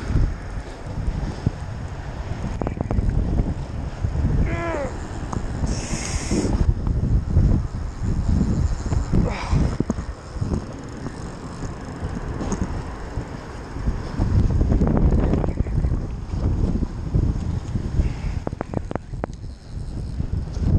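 Gusty wind buffeting the microphone, with a brief hiss about six seconds in and a few sharp clicks near the end.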